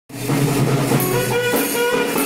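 Saxophone playing a melody in held notes, with percussion behind it, as festival procession music for ritual dancers.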